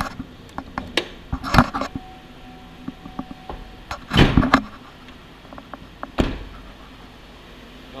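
Clicks, knocks and rustling of someone moving about a pickup truck's cab and climbing out, then a single sharp thump about six seconds in: the truck's door being shut.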